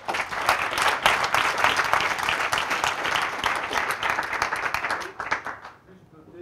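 Audience applauding: dense clapping that starts suddenly and dies away near the end.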